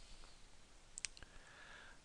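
A short cluster of faint computer mouse button clicks about a second in, against near-silent room tone.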